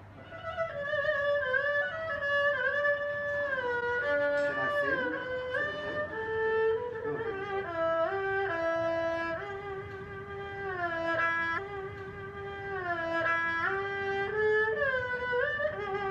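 Erhu, the Chinese two-string bowed fiddle, playing a slow solo melody, one note at a time, with smooth slides between the notes.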